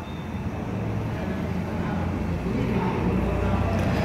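Low, steady rumbling background noise that grows gradually louder, with a brief faint squeak of a marker on a whiteboard at the very start.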